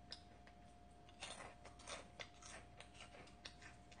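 Faint, scattered light clicks and crackles of crisp fried snack pieces being picked through by hand on a plate, over a faint steady hum.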